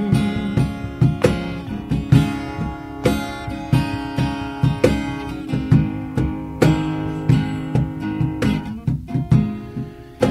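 Live acoustic guitar playing the instrumental intro of a country love song: chords picked in a steady rhythm, about three notes a second.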